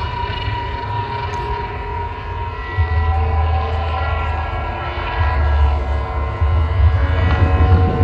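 Held, droning notes from a rock band's stage sound through a large outdoor festival PA, over a deep bass rumble that swells louder about three seconds in and again near the end.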